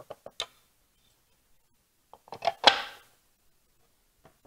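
Light clicks and knocks of polystone statue parts being handled and fitted together, a few small clicks at the start and a louder clack about two and a half seconds in.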